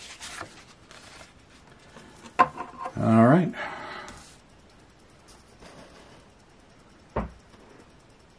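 Paper scratch-off tickets handled on a wooden table: light rustles and clicks as a ticket is laid down, with a brief wordless voice sound about three seconds in, the loudest moment. A single thump comes near the end.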